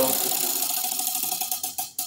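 Spinning tabletop prize wheel's clicker ticking fast. The ticks slow and space out near the end as the wheel coasts to a stop.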